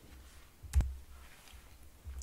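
A single sharp click about three quarters of a second in, from a computer mouse or key press advancing the presentation slide.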